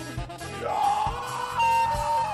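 Rock band playing live, with drums and bass under a lead line that slides up about half a second in and holds a high note.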